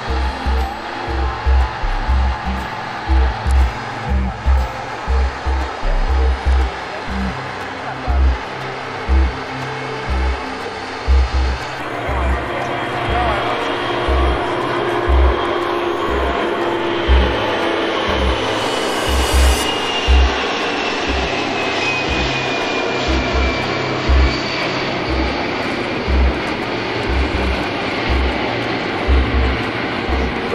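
Jet engines of the Boeing 747 Shuttle Carrier Aircraft at takeoff power during the takeoff roll and climb-out: a steady roar that grows about twelve seconds in, with a thin whine that falls in pitch a few seconds later as the jet passes. Low irregular thumps run throughout and are the loudest sounds.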